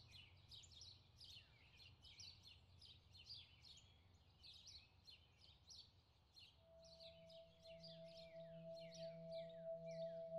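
Faint bird chirping: quick down-slurred chirps, about three a second. About two-thirds of the way in, a steady low droning tone with a few higher held tones swells in, the opening of background music.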